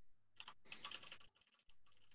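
Faint tapping of computer keyboard keys: a quick run of light keystrokes lasting about a second.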